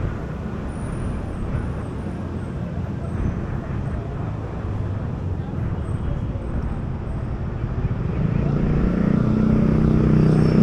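Steady city traffic noise from a wide avenue, a low rumble and hiss. In the last couple of seconds, engine hum builds and grows louder as motor vehicles approach.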